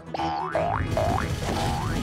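Cartoon boing sound effects for a bouncing goo blob: about four rising, springy sweeps, roughly two a second, over background music.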